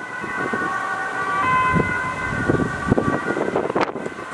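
Ambulance siren on an emergency run, sounding as steady held tones over road traffic.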